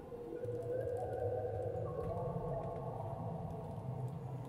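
Live contemporary ensemble music: several sustained, overlapping held tones that swell up about half a second in, over a low drone.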